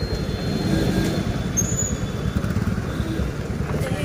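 Steady low rumble of motor vehicle engines and street traffic, from a scooter and passing motorcycles at a roadside.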